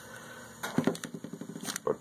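Small electric motor of an AA-battery Black & Decker cordless screwdriver running briefly, about a second, with a few clicks around it.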